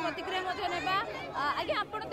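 Several people talking at once in a crowd, their voices overlapping without clear words.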